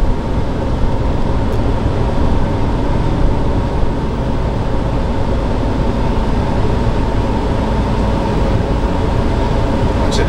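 Cabin noise of a gas Class A motorhome under way: a steady low rumble from its 8.1-litre Vortec V8 and road noise from the tyres, heard from inside the cab.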